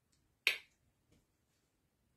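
A single sharp click about half a second in, dying away quickly, followed by a much fainter tap about a second in.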